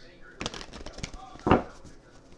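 A deck of tarot cards being handled in the hands, giving a few short sharp card slaps; the loudest comes about one and a half seconds in.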